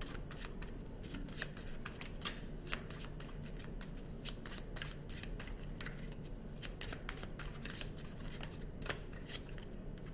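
A tarot deck being shuffled by hand: a string of light, irregular card clicks and flicks.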